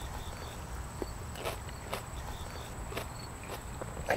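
A person chewing a bite of raw apple sweet pepper close to the microphone: a run of crisp crunches, about two a second.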